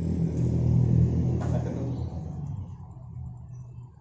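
A loud low rumble, strongest about a second in and fading away over the next few seconds, with one short click about a second and a half in.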